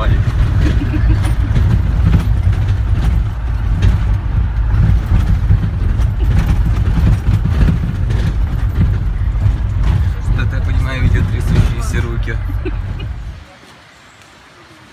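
Loud low rumble and rattling inside a passenger vehicle's cabin as it drives along a rough dirt track, with knocks and jolts throughout. The noise cuts off suddenly near the end.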